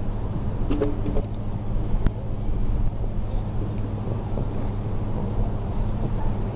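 Steady low outdoor rumble with a constant low hum, and a few faint clicks in the first two seconds.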